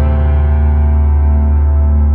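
Instrumental music: a chord on an electric piano, struck just before, sustains and slowly fades over a held electric bass note.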